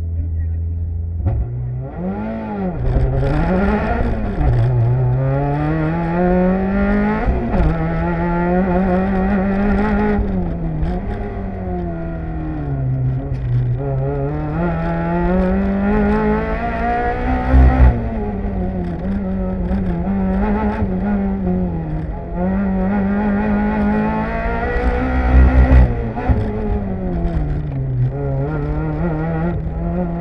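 Mazda Miata's four-cylinder engine held at steady revs for the first second, then launching and rising and falling in pitch again and again as the throttle is worked through an autocross course. Two brief low thumps come about halfway through and again near the three-quarter mark.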